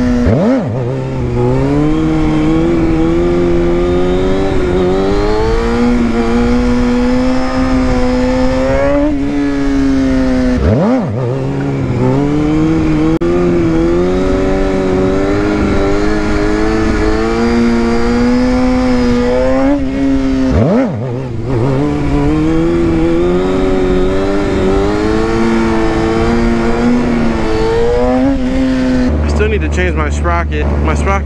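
Sport bike engine held on the throttle in long pulls, its pitch climbing slowly over several seconds at a time. The revs drop sharply three times, about ten seconds apart.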